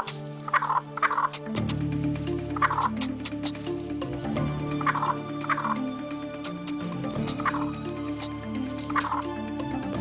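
Willow ptarmigan hen giving harsh alarm calls at her nest, short cackles that come in pairs and recur every second or two, over background music.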